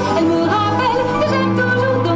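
A woman singing a melody with vibrato over backing music of sustained, held chords.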